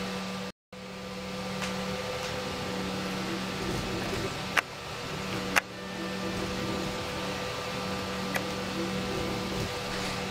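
Steady fan hum with a few faint steady tones in it, cut to silence briefly just after the start, with a couple of sharp clicks about a second apart midway and a few fainter ones.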